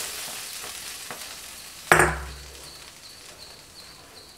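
Hot tempering oil from a ladle sizzling in rasam and dying away. About two seconds in there is a single sharp metal clank that rings briefly.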